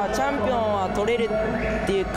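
A young man speaking Japanese over background music.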